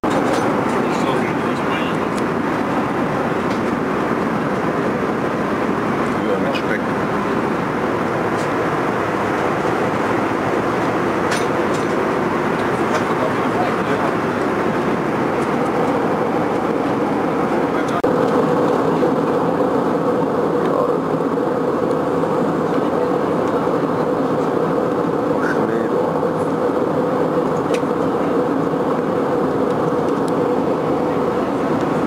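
Steady jet airliner cabin noise from a window seat: the even rush of the engines and airflow. A steady hum grows a little stronger and louder a little over halfway through.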